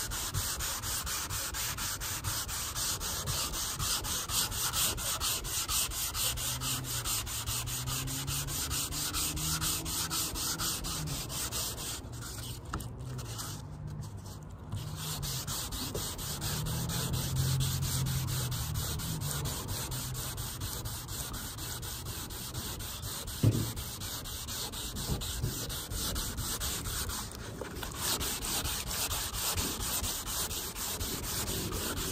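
Hand wet-sanding with 400-grit paper on a sanding block over a primed car roof, with steady back-and-forth rubbing and water running from a garden hose. This is block-sanding the primer flat. The strokes pause briefly about halfway through, a low hum swells and fades in the middle, and there is a single knock near the end.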